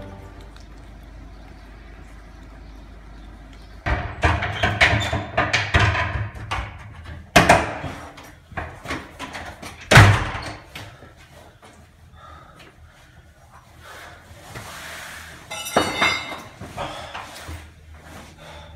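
A run of heavy thuds and bangs starting about four seconds in, the loudest a single sharp bang about ten seconds in, followed by fainter knocks near the end.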